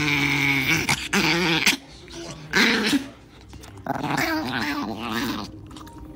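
Small dog growling and grumbling in several wavering bursts with short pauses while it is roughly petted.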